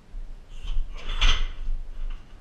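A kick landing on a car tyre hung from a weighted boxing stand: a few quick knocks building to one loud thud about a second and a quarter in.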